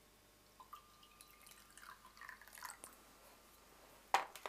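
Port poured from a glass decanter into a small glass, heard faintly. A light clink of glass with a brief ring comes about half a second in, followed by a soft, irregular trickle of liquid.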